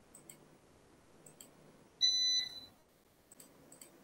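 A single short electronic beep about halfway through, a clear tone lasting about half a second, among faint scattered clicks.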